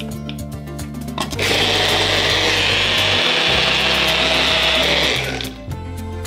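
Personal bullet-style blender running, chopping bay leaves in water: it starts abruptly about a second and a half in, runs steadily for about four seconds and stops near the end.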